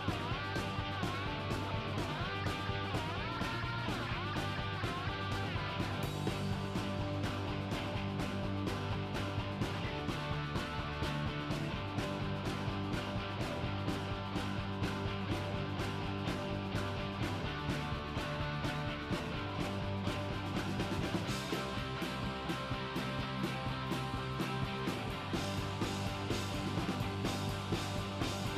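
Rock music with guitar and a steady beat, played without a break.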